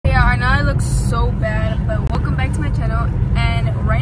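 A woman talking over the steady low rumble of a car's engine and road noise inside the cabin.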